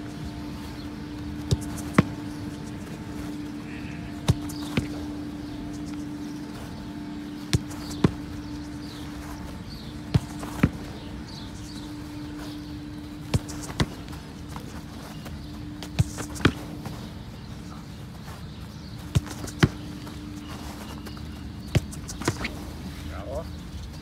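A football kicked, then the ball meeting a goalkeeper's gloves about half a second later, the pair repeating every two to three seconds, eight times in all.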